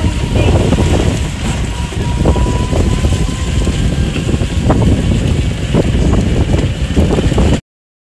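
Wind buffeting the microphone over the rumble of a ride in an open rickshaw on a rough road, with occasional short knocks from the bumps. The sound cuts off abruptly near the end.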